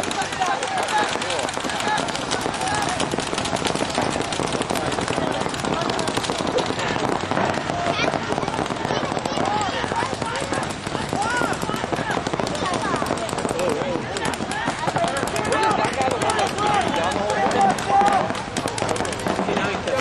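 Paintball markers firing on the field, a continuous crackle of many overlapping pops, with voices shouting over it. The pops are a little louder near the end.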